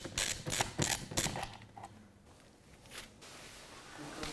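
Screwdriver turning the screw of a wall outlet cover plate: a quick run of small clicks and creaks through the first second or so, then quieter, with one more click about three seconds in.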